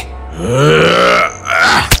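A man's voice, acted, crying out in agony as though his ears were being torn off: one long strained groaning cry about half a second in, then a shorter second cry near the end, over a low steady music drone.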